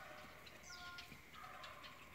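Near silence outdoors, with one faint, short distant call about a second in.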